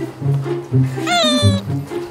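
A Shih Tzu gives one short whine, falling slightly in pitch and lasting about half a second, about a second in, over background music with a bouncy, steady bass line.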